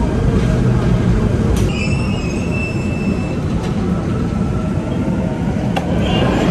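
Seoul Metro Line 2 subway train heard from inside the car as it brakes into a station: a steady low rumble, with a high wheel squeal for about two seconds near the start.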